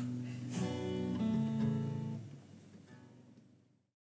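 Final chord strummed on a hollow-body electric guitar about half a second in, ringing on and slowly dying away near the end as the song finishes.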